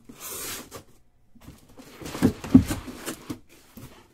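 A cardboard shipping case being opened and pulled off its contents: a brief scraping rustle of cardboard at the start, then a cluster of knocks and thumps of cardboard and boxes being handled around the middle, the loudest about two and a half seconds in.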